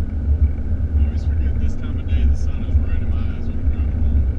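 Steady low rumble of a car's engine and road noise, heard from inside the cabin while driving.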